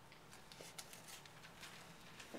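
Faint rustling of paper sheets being handled, a few short crinkles over a quiet room.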